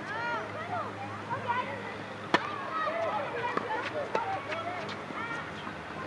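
A tennis racket strikes the ball sharply a little over two seconds in, with fainter hits and bounces after it during a doubles rally. Many short, high squeaks that rise and fall run through the rally.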